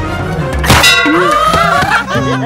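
A loud metallic clang used as a trailer sound effect, struck about two-thirds of a second in and ringing on. Rising, gliding tones follow it over the background score.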